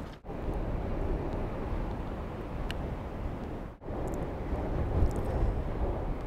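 Steady wind noise on the microphone, low and even. It drops out briefly twice, about a quarter second in and just before four seconds.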